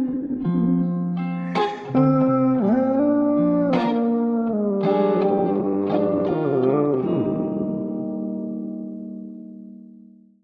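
Guitar playing the closing chords of an indie/alternative song, with several strums in the first seven seconds; the last chord rings out and fades away near the end.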